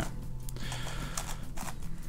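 A DaYan NeZha 5M strong-magnetic 5x5 speed cube being turned by hand, giving a few light plastic clicks as its layers turn, over quiet background music.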